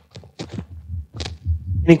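Irregular low thumps and rustling on a clip-on microphone as its wearer moves, then a man's voice beginning "Any questions?" near the end.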